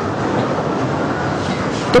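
A steady, loud rumbling noise with no clear rhythm or pitch. A single spoken word cuts in near the end.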